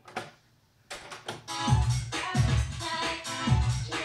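Music playing back from a Maxell chrome cassette on a Technics RS-BX501 deck fitted with new pinch rollers. After a moment of near silence the music starts about a second in, and a heavy bass beat comes in shortly after.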